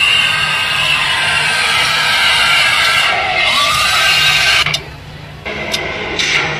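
A loud jumble of crowd noise and music. It drops away abruptly a little before the end.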